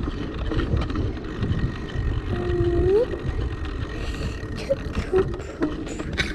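Bicycle-mounted action camera rumbling and rattling as the bike rolls over brick paving. About halfway through there is a short tone that holds and then rises.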